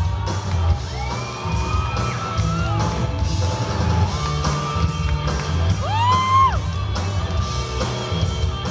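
Live rock band playing electric guitars, bass and a drum kit, with long lead notes that bend in pitch over a heavy bass line; the strongest held note comes about six seconds in.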